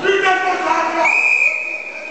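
A wrestling referee's whistle blown in one long, steady blast starting about a second in, after about a second of shouting voices.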